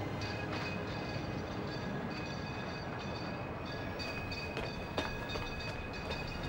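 Steady background ambience of a night street, an even rumbling noise with faint high steady tones and a few soft clicks, no music.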